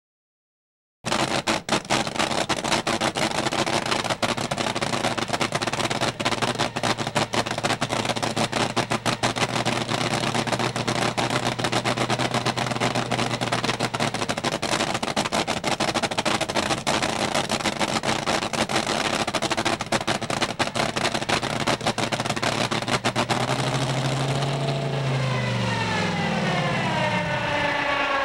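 Supercharged V8 of a rear-engine dragster running in the pits, a harsh, crackling, rapid firing that holds steady. Near the end the revs rise briefly and then wind down.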